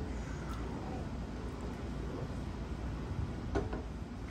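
Quiet, steady low rumble of background noise, with a faint click about half a second in.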